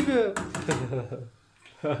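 Talking voices in a small room, with a brief near-silent pause about a second and a half in.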